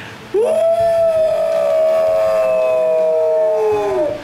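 A woman imitating howling wolves with her voice through cupped hands: one long howl that starts about a third of a second in, swoops up and holds, with a second, lower pitch sounding at once and sliding slowly down.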